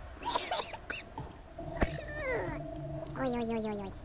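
A woman eating with her mouth full: wet chewing and mouth clicks, a sharp click a little under two seconds in, then two falling hums, the longer one near the end.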